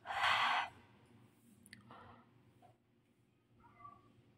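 A person sighing: one short breathy exhale at the start, followed by faint, scattered quiet sounds.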